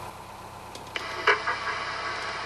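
Quiet low background. About a second in, a marine VHF radio's speaker opens with a steady hiss of static as the Coast Guard's reply starts to come in.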